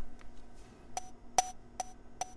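Click track playing back: short electronic metronome clicks, each with a brief pitched ping, starting about a second in and coming evenly about two and a half times a second, three in all, with no instruments yet.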